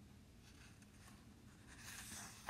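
Near silence, with faint rustling of a paper book page that grows near the end.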